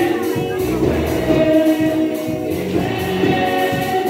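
Gospel choir singing, the voices holding long notes.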